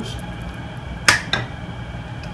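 A spoon spreading mayonnaise across a burger bun, with a sharp click about a second in and a smaller one just after, over a steady background hum.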